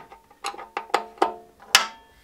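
A screwdriver working the screw and small cover plate of a metal battery cabinet: about five sharp metallic clicks, each ringing briefly, the loudest near the end.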